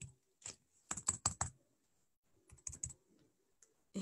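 Computer keyboard typing, a few short runs of quick key clicks with pauses between them.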